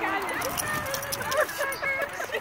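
Several dogs romping in a shallow muddy puddle: water splashing under their feet, with short dog vocalisations and people's voices in the background.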